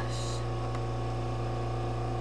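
Steady low electrical mains hum, with a brief soft hiss just after the start and a faint tick near the middle.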